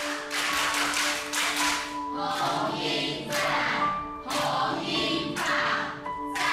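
A group of people singing an encouraging cheer together in unison, clapping their hands in rhythm as they sing.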